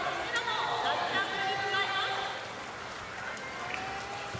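Orcas calling: a run of pitched, wavering calls with gliding notes through the first half, then a fainter single call that rises and falls near the end.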